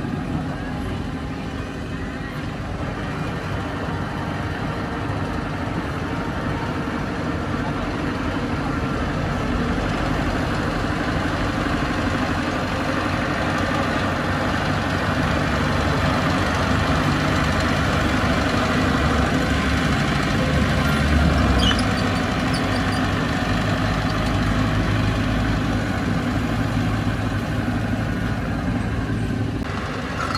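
Heavy construction machine's diesel engine running steadily, rising briefly in loudness about two-thirds of the way through.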